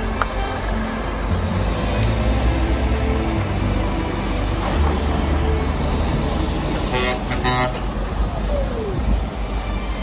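A heavy truck's diesel engine rumbles as it passes close, with tyre noise on the wet road. A horn toots in two short blasts about seven seconds in.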